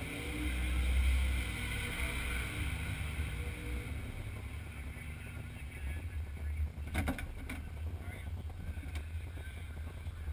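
Low steady rumble of a vehicle engine running nearby, loudest in the first couple of seconds, with a few short knocks about seven seconds in.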